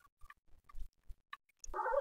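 Faint, scattered scratches, clicks and small squeaks of a stylus writing on a pen tablet. A man's voice starts speaking near the end.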